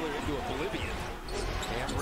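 Basketball being dribbled on a hardwood court, low thumps heard through a TV game broadcast with commentary over it.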